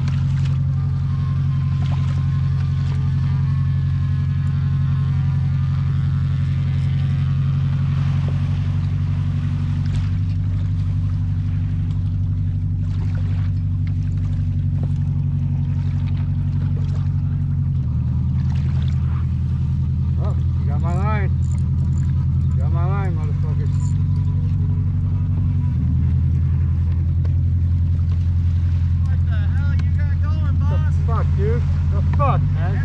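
A commercial fishing boat's engine runs close by with a loud, steady low drone. Its note shifts about two-thirds of the way in and again near the end as the boat comes alongside.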